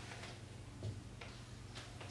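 Quiet room tone with a low steady hum and faint ticks about once a second.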